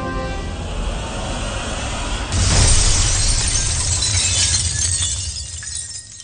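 Film sound effect of an SUV crashing through a glass wall. A low rumble builds, then about two seconds in comes a sudden loud crash of shattering glass and debris that slowly dies away.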